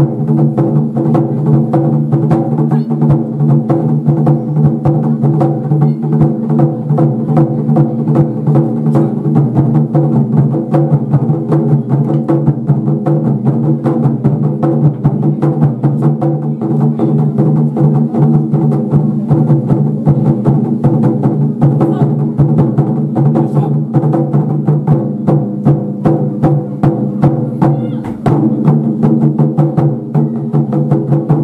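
Taiko drum ensemble playing: sticks striking large barrel-bodied taiko drums in rapid, continuous strokes over a steady low hum.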